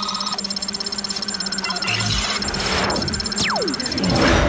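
Electronic, glitchy sound design and score: a steady low hum and a high tone under a fast pulsing digital flutter, a low thump about two seconds in, and a long falling whistle near the end.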